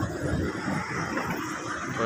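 Indistinct background noise of an indoor shopping mall, with rustling from the phone as it is swung around.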